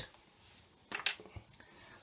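A few faint short clicks about a second in, in a pause that is otherwise quiet.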